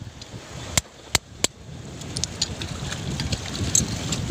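A pointed iron tool striking and prying at hard shellfish shells stuck to a rock: three sharp clicks about a second in, then a few lighter ticks, over a steady rush of outdoor noise.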